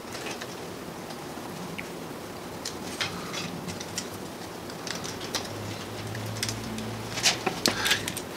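Light clicks and scratches of wire being handled and threaded by hand around a wooden broom handle, with a few sharper ticks near the end. A faint low hum comes in for about two seconds late on.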